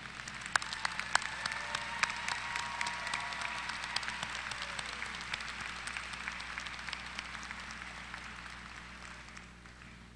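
Large audience applauding. The applause is full at first, then fades gradually over the second half and has nearly died out by the end.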